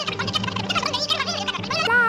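Shrill, warbling cartoon cry sound effect, many quavering high voices layered over each other, running through the whole two seconds over a low steady hum.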